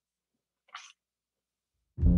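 Near silence: room tone, broken once just before a second in by a brief, faint breath from the person at the microphone.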